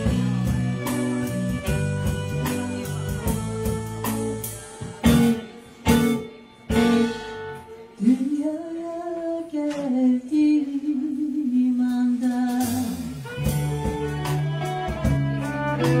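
Live jazz-blues band with vocals, saxophone, electric bass, drums, banjo, violin and piano. About five seconds in the band drops to a few sharp accented hits, then a solo voice holds one long sliding note alone for about five seconds before the full band comes back in.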